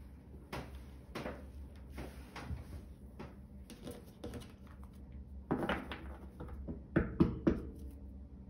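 Tarot cards being handled and shuffled, with soft rustles and taps and a few sharper knocks on the table, the loudest of them near the end.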